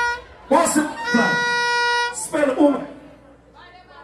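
A woman's voice singing through a PA microphone: a short phrase settling into one long held note of about a second, then a shorter sung phrase, fading near the end.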